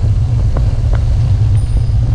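Wind buffeting the microphone of a camera on a moving bicycle: a loud, steady low rumble. Tyre noise on the gravel road is mixed in, with a couple of faint ticks about half a second and a second in.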